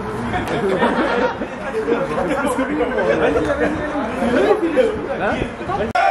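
Several men's voices talking over one another in lively group chatter, with no one voice standing out.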